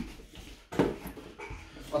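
A toddler's short vocal sound about a second in, with fainter small sounds after it.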